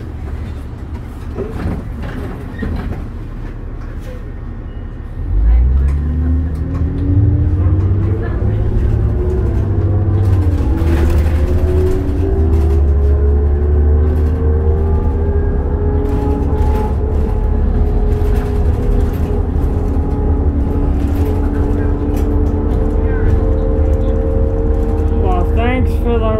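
Interior sound of a 2002 New Flyer D40LF diesel city bus: a low idle rumble while stopped, then about five seconds in the engine revs up as the bus pulls away, with a whine that climbs in pitch for several seconds and then holds steady as it cruises.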